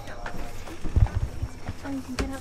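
Footsteps and handling bumps from a handheld camera, a few dull low knocks with the clearest about a second in, with a faint voice in the background.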